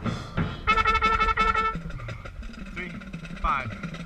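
Marching band music: a trumpet close to the microphone holds one loud note for about a second, right after a breathy rush at the start. Quieter ensemble playing follows, with a short sliding note near the end.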